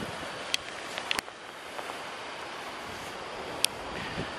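Steady, fairly quiet hiss of wind on the microphone outdoors, with a few faint clicks.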